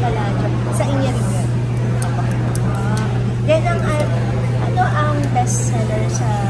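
Two women in conversation in Filipino, with a steady low hum underneath.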